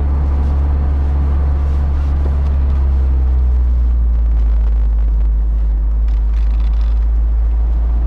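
Roadster's engine and road noise heard from inside the car while driving: a steady low drone under a haze of wind and tyre noise, the drone dropping slightly in pitch about three seconds in.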